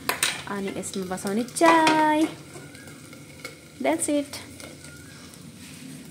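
A lit gas stove burner hissing, with a sharp click right at the start and a few small knocks. A voice cuts in with one long drawn-out call about two seconds in and a shorter one near four seconds.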